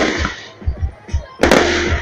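Aerial fireworks shells bursting: two loud bangs, one at the start and another about a second and a half in, each trailing off in a crackling, echoing tail.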